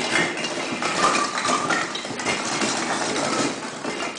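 Many Christmas baubles clattering and clinking against each other in a continuous rattle as a toddler burrows and rolls among them in a box.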